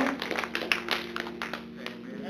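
A few people in a congregation clapping, quick, uneven claps that thin out and fade toward the end, over a chord held on the church keyboard.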